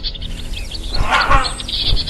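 Background music with a low pulsing beat, mixed with rapid high bird chirps. About a second in comes a loud, harsh bird call.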